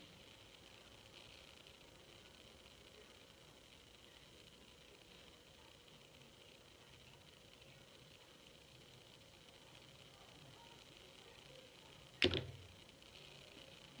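Quiet room tone with a faint hiss, broken about 12 seconds in by a single sharp knock that dies away within half a second.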